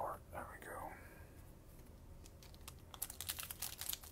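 Plastic trading-card pack wrapper crinkling and crackling as it is gripped and begins to tear open, a quick run of crackles near the end after a quiet stretch.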